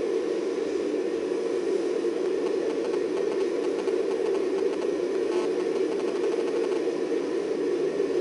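Five-segment solid rocket booster burning on a static test stand: a steady, unbroken rushing noise that neither rises nor falls. It is heard through a television's small speaker, so it sits in the middle range with little deep rumble.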